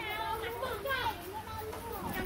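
High-pitched voices calling and chattering, their pitch rising and falling quickly.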